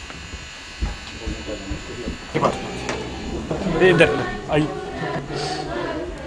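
A steady electrical hum with a few soft low thumps, then people's voices from about two seconds in.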